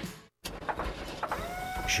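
Auto repair shop sounds: scattered clatter over a noisy bed, and a steady whine from a machine or power tool starting a little past halfway. It follows a brief gap of silence.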